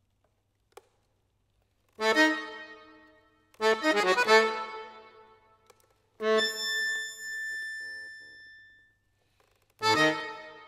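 Concert accordion playing a sonata, with loud chords that start suddenly and die away, separated by silences. The first comes about two seconds in, a second, denser one soon after, and a third that is held and fades out near the end before a new chord begins.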